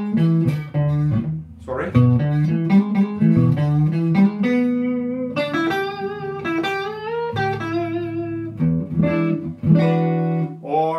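Stratocaster-style electric guitar played clean, a single-note bluesy lead line in E with string bends and vibrato on held notes.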